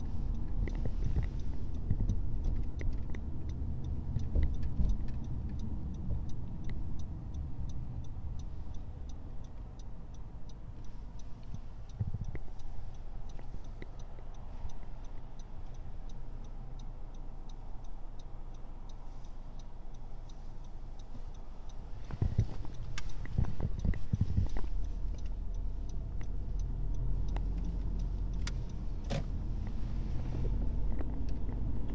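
Steady low engine and tyre rumble inside a Honda Civic's cabin as it drives, with a faint, regular ticking through roughly the first two-thirds and a few louder knocks a little before the end.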